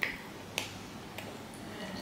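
Close-miked eating sounds: a person chewing a mouthful of rice and pork with sharp mouth clicks, the loudest at the very start and another about half a second in.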